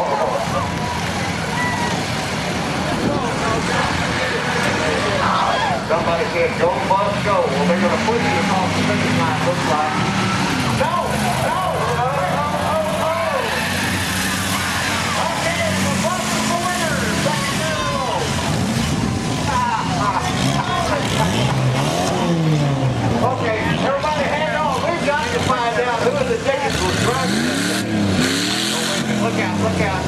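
Several dirt-track race car engines running and revving at once, their pitch rising and falling over and over as the cars accelerate, back off and pass, with the sweeps strongest near the end.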